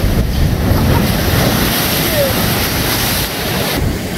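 Ocean surf breaking and washing over rocks as a steady loud rush, with wind buffeting the microphone.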